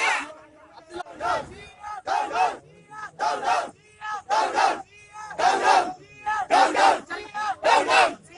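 A crowd of marchers shouting slogans together in rhythm, one short loud shout roughly every second.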